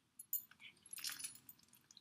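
Faint clicks and clinks of the gold-tone metal clasps on a leather bag strap being handled: two sharp clicks near the start, then a scatter of lighter ones about a second in.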